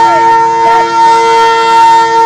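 Tarpa, the Adivasi wind instrument made of a dried bottle gourd and bamboo pipes, playing a loud, steady drone. Two notes are held throughout, with brief pitch flicks near the start and about halfway through.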